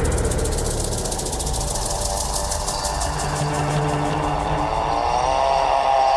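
Dramatic soundtrack sound effect: a loud, sudden low rumble with a fast rattling pulse, joined near the end by a swelling tone that bends upward.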